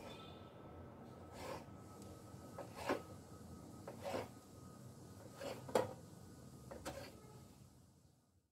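A knife cutting a roll of dough into small pieces, the blade knocking faintly on a wooden chopping board about six times at irregular intervals.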